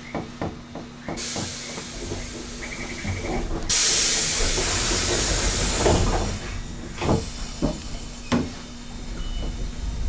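Hissing air from a Keifuku Mobo 621 tram's pneumatic system, faint at first and then much louder for about three seconds, with a few sharp clunks in the later part.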